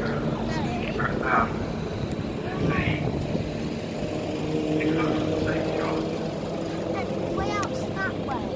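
A vehicle engine running with a steady hum, with people talking over it.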